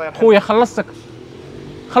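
A man's voice, loud, in the first second, followed by a faint steady hum.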